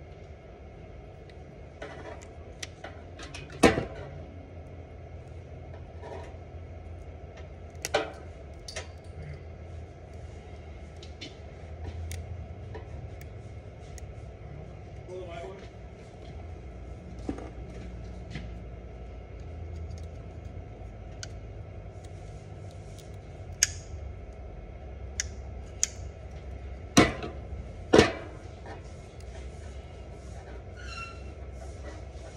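Sharp plastic clicks and snaps from handling a cat6 cable in a hand-held crimp-and-strip tool and working the wires by hand, over a low steady hum. The loudest clicks come a few seconds in, again a few seconds later, and as two close together near the end.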